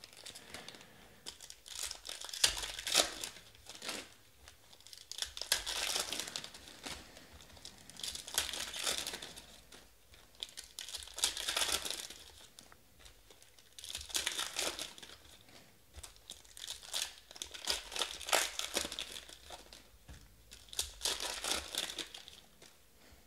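Foil trading-card packs (2019 Panini Select football) being torn open and crinkled by hand, in crackly bursts every two to three seconds.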